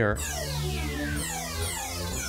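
Serum software synthesizer played from a computer keyboard: low held synth notes that change about a second in, with repeated downward-sweeping tones over them.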